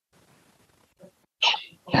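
Near silence for over a second, then a short, sharp breathy burst from the man's voice, a quick exhale or intake of breath, just before he starts speaking again.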